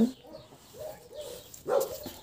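Puppies vocalising as they play-fight: faint whining, then one louder short yelp near the end.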